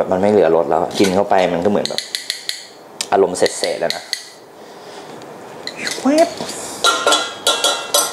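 A metal spoon clinks and scrapes against a fine-mesh metal strainer and a stainless saucepan as gravy is pushed through the strainer. There are sharp, ringing metal clinks, and the loudest come near the end.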